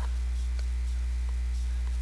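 Steady electrical mains hum picked up in the recording: a constant low hum with a ladder of higher overtones, unchanging throughout.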